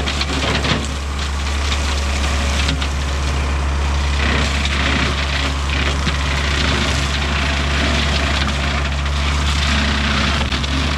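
John Deere tractor's diesel engine running steadily under load, driving a side-mounted brush cutter that is chewing through roadside brush and small trees, with a scattering of crackles and snaps over the engine's drone.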